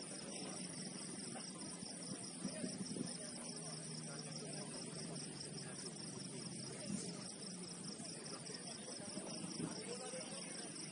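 Crickets chirping in a steady, evenly pulsing high trill, over a faint wash of open-air background noise.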